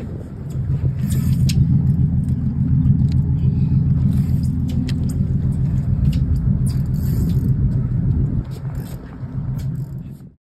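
Boat engine running steadily at idle, a low hum, with scattered sharp clicks and knocks over it. The hum eases off about eight and a half seconds in.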